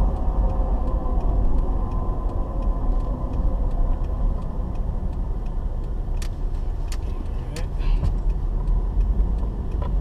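Car driving, heard from inside the cabin: a steady low engine and road rumble. A few sharp clicks come about two-thirds of a second apart past the middle.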